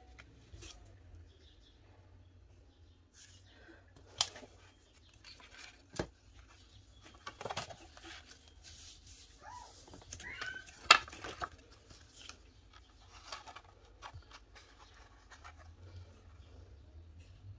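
Cardstock being handled on a work surface: paper rustling and sliding, with scattered light taps and clicks. The loudest is a sharp click about eleven seconds in.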